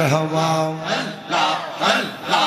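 A man's voice singing a Bengali devotional chant, holding one long note for most of the first second and then breaking into shorter rising and falling syllables.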